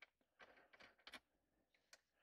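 Near silence, with a few faint, short clicks and ticks from a tightening ring being screwed down on the ball-and-socket joint of a headrest speaker mount.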